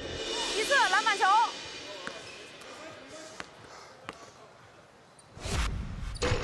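Basketball game sounds on an indoor court: the ball bouncing, with a few sharp clicks and one loud thud near the end.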